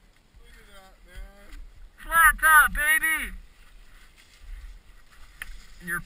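A man's voice: faint words about a second in, then three short, loud syllables about two seconds in.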